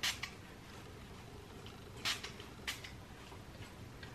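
Fine-mist pump spray bottle spritzing onto hair in a few short hisses: one at the start, then two more about two seconds in, with faint room tone between.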